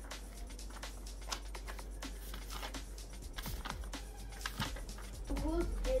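Sheets of paper being handled and laid out on a rug: scattered light rustles and taps, under quiet background music.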